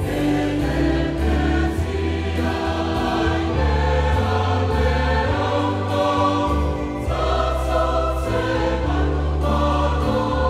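Mixed church choir of men and women singing a hymn in Samoan, holding long sustained chords that change every second or so.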